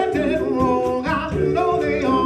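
Live male vocal group singing held, sustained notes over keyboard and a drum kit keeping a steady beat, heard through a PA.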